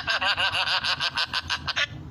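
A man laughing hard in a fast run of short, high-pitched 'ha' sounds, about seven a second.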